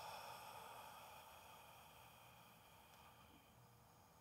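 A long, slow open-mouth sighing exhale, a soft breathy rush of air that fades away over the first two seconds into near silence.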